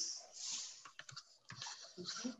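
Faint, scattered clicks and brief rustling noises, with no voice.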